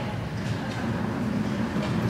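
A steady low rumble, even and unbroken.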